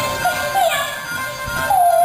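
Teochew opera music: a pitched melody line that bends and slides in pitch, once about half a second in and again near the end, over steady accompaniment.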